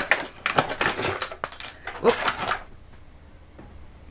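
Cardboard and plastic packaging of a lip-plumper device being handled and opened, with rustles and clicks. A sharp knock about a second and a half in is a small piece falling out of the box.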